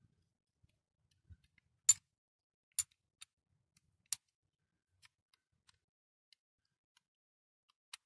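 Short, sharp clicks from a diecast toy Range Rover ambulance being handled, its small parts pressed and snapped into place: three louder clicks about a second apart, with a few fainter ticks around them.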